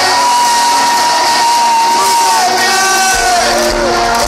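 A rock band playing live through a stadium sound system, with crowd noise. A long held high note slides down about halfway through, and a shorter falling glide follows near the end.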